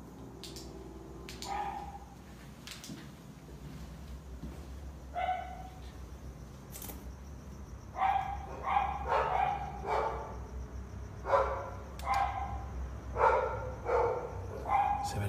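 A dog barking: a couple of single barks, then a run of repeated barks from about eight seconds in.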